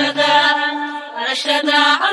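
A Somali song sung a cappella, with no instruments. Layered voices hold long, sustained notes. A low backing voice stops about half a second in.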